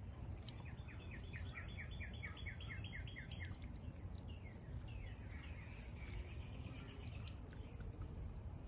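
Floating solar fountain pump throwing small jets of water that patter faintly back onto the water of a stone-filled pot. A run of quick high chirps, about four a second, sounds over it in the first few seconds.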